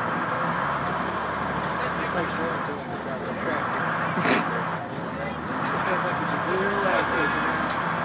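International DT466 diesel engine of a 2006 IC CE school bus idling steadily, heard from inside the bus cabin, with voices in the background and a sharp click about four seconds in.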